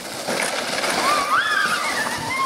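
Plastic sleds scraping and hissing as they slide over icy, crusted snow. From about a second in, a high, wavering squeal rises and falls over the scraping.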